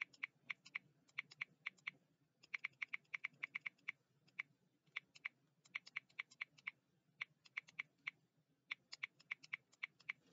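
Faint typing on a computer keyboard: irregular runs of quick key clicks, with a short pause about two seconds in.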